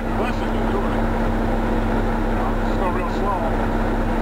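Truck engine and road noise heard inside the cab while driving: a steady drone with a constant low hum.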